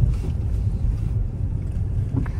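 Low, steady road and engine rumble inside the cabin of a moving car.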